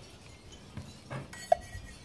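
A drinking glass and an aluminium beer can being picked up off a wooden table: faint handling noise, then one sharp clink of glass about one and a half seconds in.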